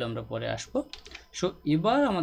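A person talking, with computer keyboard clicks among the speech.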